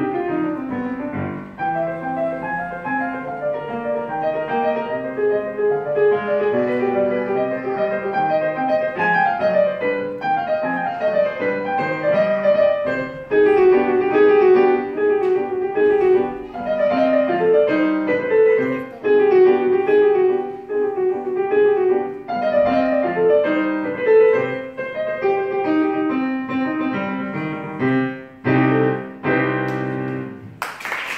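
Digital piano played solo, a melody over a running accompaniment, closing with a few loud chords near the end.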